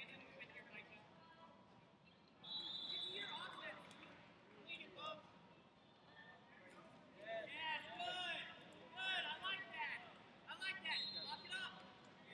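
Coaches and spectators shouting across a large wrestling hall. The words cannot be made out, and the shouts come in several loud spurts in the second half. A brief high steady tone sounds twice, each about a second long.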